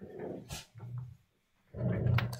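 A man's low voice, indistinct, in short broken stretches with a brief pause near the end.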